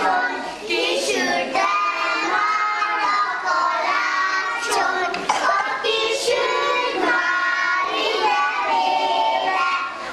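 A group of young children singing a song together in unison, without a break.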